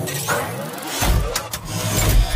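Edited-in sound effect for an animated channel intro: a loud, deep rumble with pitched, gliding tones and sharp clicks, swelling again about a second in.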